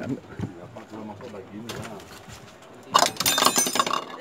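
Men's voices talking in the background, then a loud, harsh burst of noise lasting about a second near the end.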